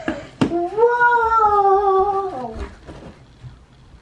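A short sharp click, then a single long vocal call, held for about two seconds and dropping in pitch at the end.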